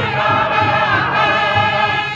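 A group of singers chanting a powwow 49 song together, their voices holding one long note in unison.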